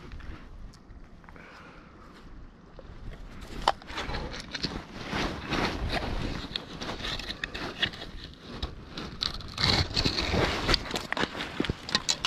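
Irregular clicks, crackles and rustles of hands working among wet rocks, shells and seaweed in a rock pool. It starts about four seconds in, after a fairly quiet opening.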